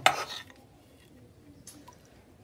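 A sharp metallic clack as the cut pieces of braided stainless-steel water-heater connector hose are handled on a hard surface, followed by a faint rustle and one soft click near the end.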